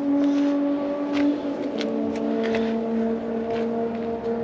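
A car engine idling, a steady hum that steps down slightly in pitch a little under halfway through, with a few faint clicks.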